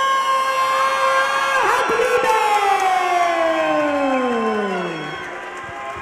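A ring announcer over the PA drawing out a fighter's name in two long held syllables, the second sliding far down in pitch and fading out about five seconds in, with the crowd cheering beneath.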